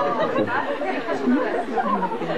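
Several voices talking over one another: background chatter of a small audience.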